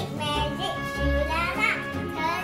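A young child's voice over background music with a steady low bass.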